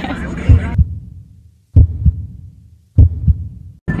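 Heartbeat sound effect added in editing: three slow double thumps, lub-dub, about a second apart. Under them the bus noise turns muffled and fades out, and it all cuts off abruptly just before the end.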